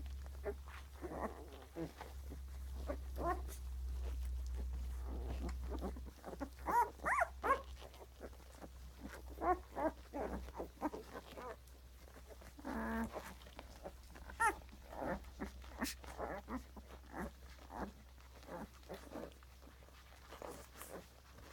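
A litter of young puppies grunting and squeaking while nursing: many short calls in an irregular stream, the loudest about seven seconds in, with one longer call around thirteen seconds.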